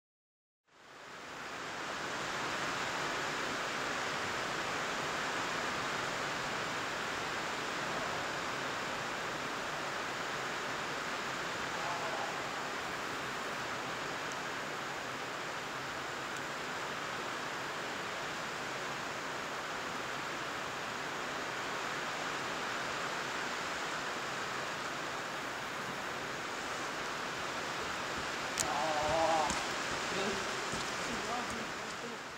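Heavy rain pouring down on the sheet-metal roof of an indoor riding arena, heard from inside as a steady, even hum. It fades in about a second in.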